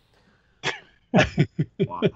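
A single cough-like burst from a man, then men laughing in short, quick bursts, about five a second.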